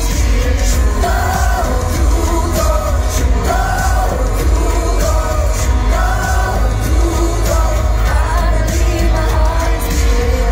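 Live pop song played loud through an arena sound system, with a woman singing long held notes over heavy bass, picked up from among the audience.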